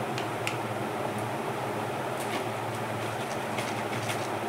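Steady electric motor hum with an even hiss, with a few faint light clicks, about half a second in and again near the middle, as a jar lid is handled and set down.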